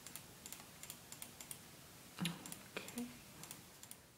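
Computer keyboard typing in irregular runs of light key clicks, with a brief soft voiced sound a little over two seconds in.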